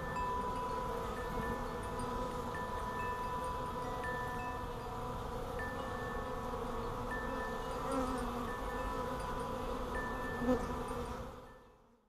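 Honeybees buzzing at a hive entrance, with clear wind-chime tones ringing over the buzz. The sound fades out near the end.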